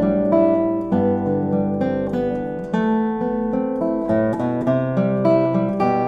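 Classical nylon-string guitar with a cedar/cedar double top and Madagascar rosewood back and sides, played fingerstyle: a flowing solo line of plucked notes over ringing bass notes.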